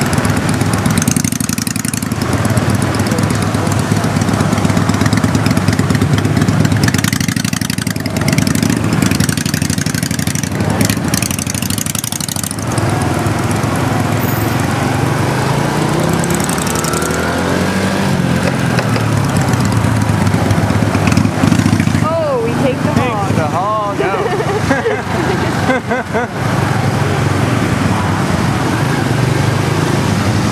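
Motorbike engine running while riding slowly through dense street traffic, with heavy wind rush on the microphone. The engine note rises and falls about midway through.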